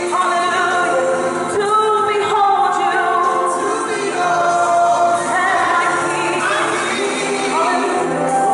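Women of a church praise team singing a gospel song into microphones, holding long notes and sliding up between pitches.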